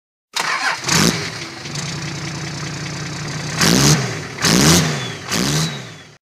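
An engine starting: a brief crank that catches about a second in, a steady idle, then three short revs, each rising and falling in pitch, before the sound cuts off suddenly.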